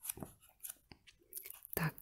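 Pages of a card deck's companion book being turned and handled: faint papery crackles and a few soft taps.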